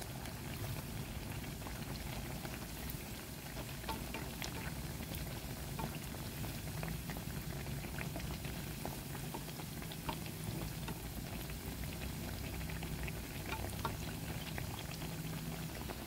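Battered banana slices deep-frying, fully covered in hot oil over a high flame: a steady bubbling sizzle with scattered small crackles and pops.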